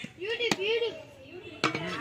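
A metal scoop knocking against the rim of a large metal cooking pot while biryani is dished out: one sharp knock about half a second in, then a quick cluster of knocks near the end. Voices talk over it.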